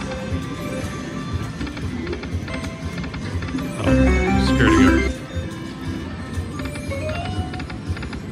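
Slot machine game sounds from a Dragon Link "Happy & Prosperous" machine: melodic reel-spin music and chimes as the reels spin and stop. A louder jingle comes about four seconds in, as a small win counts up.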